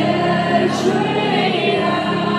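Live band music from a keyboard-and-drums duo playing a slow song, with sustained chords and held notes between sung lines.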